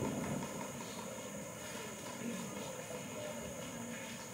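Steady background noise of a crowded hall: an even, low drone with no distinct events.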